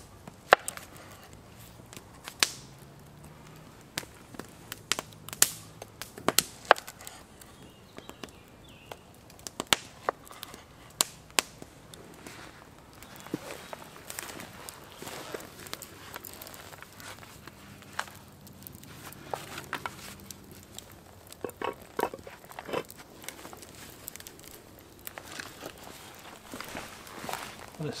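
Scattered sharp clicks and knocks: a cleaver slicing through black pudding onto a wooden chopping board, and wood crackling in a smoking campfire.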